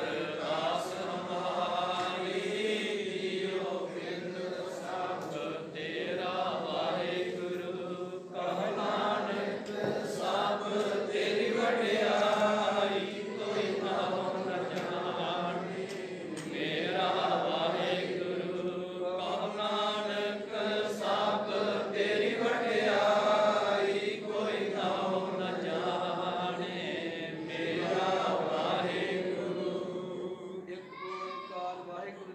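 Sikh devotional chanting: a continuous, melodic recitation by voice, rising and falling in pitch without a break.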